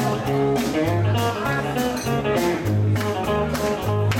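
Live country band playing an instrumental passage: an electric bass line under strummed guitar and fiddle, with a steady beat.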